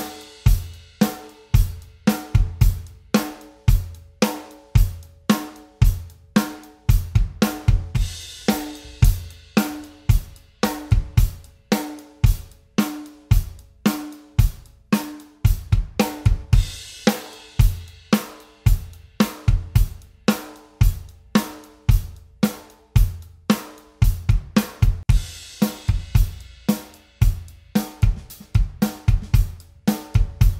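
Drum kit groove built around a 14 x 6.5 inch brass snare drum with an Evans G1 batter head, with steady snare backbeats over kick drum and hi-hat. A cymbal wash comes in about every eight seconds. The snare is heard first fitted with a steel triple-flanged hoop, then with a die-cast hoop.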